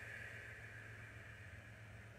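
Very quiet room tone: a steady low hum with a faint hiss that slowly fades away.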